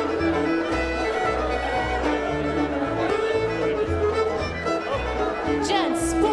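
A string band playing a fiddle-led contra dance tune for the dancers, with bass notes pulsing steadily underneath.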